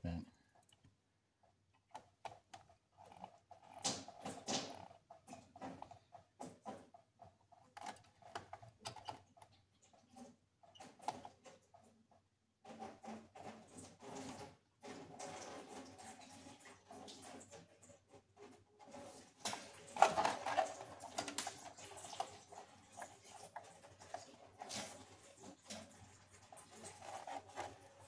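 Engine coolant dribbling out of the opened thermostat housing into a catch container, under irregular small clicks, taps and rustles of hands working in the engine bay. A louder clatter comes about two-thirds of the way through.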